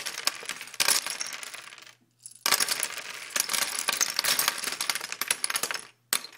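A dense clatter of many small hard objects clinking together, in two long runs broken by a short gap about two seconds in.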